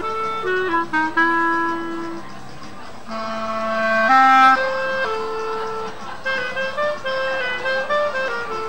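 Clarinet playing a melody, one line of notes with no one speaking. It steps downward over the first two seconds, then a long low note steps up and swells to its loudest about four seconds in, followed by shorter, quicker notes.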